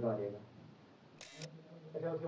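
A man's speech trails off, then after a near-quiet second comes one short, sharp click-like burst of noise, like a camera shutter, where the recording cuts to the next clip.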